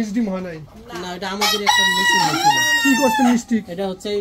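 A deshi rooster crowing once: a single long call of about two seconds that starts about a second and a half in and is the loudest sound here.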